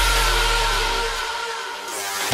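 Cinematic trailer sound design: a low drone with a thin high tone gliding slowly downward, fading near the end as a hiss swells up.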